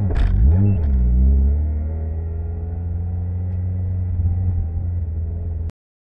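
Mazda Miata four-cylinder engine heard from inside the car: the revs dip and rise once in the first second, with a brief sharp noise at the start, then the engine runs low and steady. The sound cuts off suddenly near the end.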